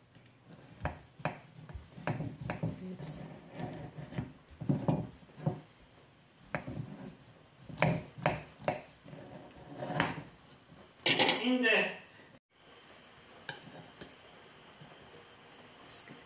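Knife cutting through a baked poppy seed cake with a toasted almond-flake topping: a run of irregular cutting strokes, the blade scraping and knocking against the porcelain plate, loudest about eleven seconds in.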